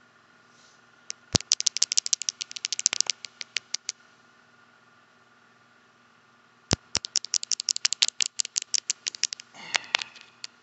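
Rapid tapping on a phone, close to the microphone: two runs of sharp clicks at about ten a second, the first lasting about three seconds and the second starting about seven seconds in. A short rustle follows near the end.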